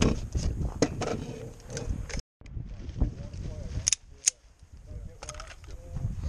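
Sharp metallic clicks and clatter of an AR-style rifle being handled and cleared at a range officer's clear-gun command, with faint voices. The sound drops out briefly a little past two seconds, and a few quieter clicks follow.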